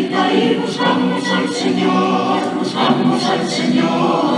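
A mixed choir of men's and women's voices singing a cappella in held, full chords that move from one to the next without a break.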